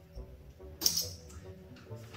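Faint background music with a single sharp click a little under a second in, from bottle caps being handled.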